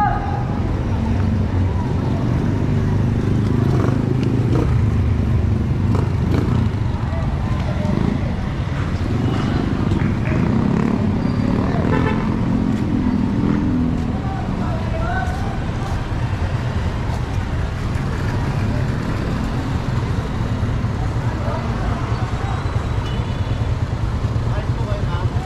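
Street traffic: motorcycle tricycles and other vehicles running along the road in a steady low rumble, with people's voices in the background.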